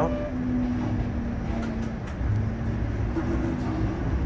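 Interior of a moving TTC Flexity Outlook streetcar: a steady low rumble of the car running along the track, with a faint steady hum.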